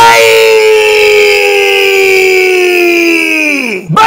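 A man's voice holding one long shouted call for nearly four seconds, its pitch sinking slowly and then falling away just before the end.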